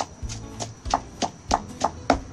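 Stone pestle pounding red chillies and garlic in a stone mortar: a steady rhythm of sharp knocks, about three a second.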